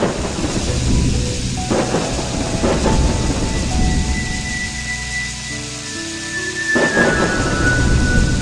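Thunder-and-rain sound effect under slow background music with held notes. The storm starts suddenly with a crash, with rumbles about two and three seconds in and a bigger one near the end over steady rain.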